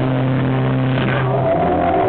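Live rock band playing, with distorted electric guitar and bass holding a low chord for about a second and a half, then moving on to new notes.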